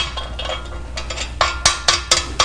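Sharp metallic clinks and knocks from bolts and metal frame parts being handled and fitted together. There is one clink at the start, then several in quick succession in the second half, each with a short ring.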